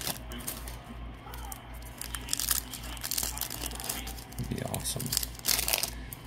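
Foil trading-card pack wrapper crinkling and being torn open by hand: irregular crackles and rustles.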